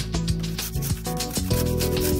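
A garlic clove rubbed in repeated strokes against the teeth of a stainless steel box grater, making a rasping sound, over background music.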